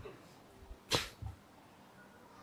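A pause in speech with one short, sharp breath into the microphone about a second in, followed by a faint low bump.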